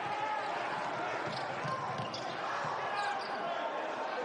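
Basketball being dribbled on a hardwood court during live play.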